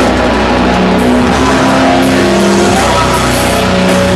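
Grindcore band playing live, loud and dense: heavily distorted guitar and bass hold long low chords that change about every second, over drums.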